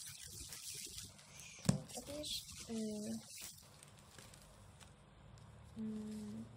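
Paper and card being handled: light rustling with a few small clicks, and one sharp tap a little under two seconds in, as a bookmark set and pencil are picked up from a pile of books. A woman's voice makes short wordless sounds in the middle and again near the end.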